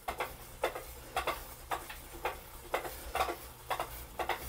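Tacx Neo 2 smart trainer running its cobblestone road-feel simulation. A steady low hum runs under regular knocks about twice a second as the trainer's electromagnets jolt the bike and the iPad mounted on it.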